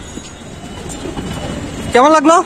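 Busy street noise: a steady rumble of passing vehicles, growing a little louder toward the end.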